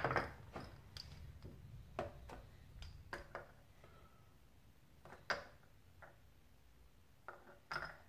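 Faint, scattered clicks and taps of metal engine parts being handled: a piston-and-connecting-rod assembly set down on a digital scale on a workbench. The sharpest knock comes about five seconds in.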